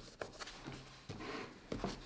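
Fingers rubbing and tapping paper stickers down onto a planner page: faint rubbing with a few small clicks and taps.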